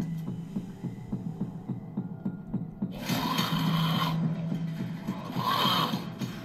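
Television drama audio with a low, throbbing suspense score and a steady hum under it. Two harsh, hissing bursts sound, one about three seconds in and a shorter one near the end.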